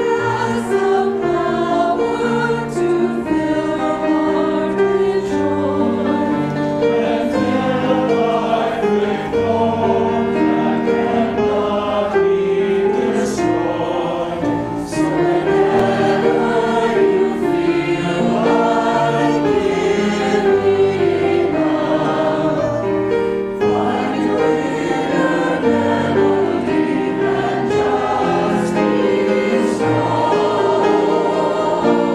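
Mixed choir of men and women singing a piece in several parts, with piano accompaniment.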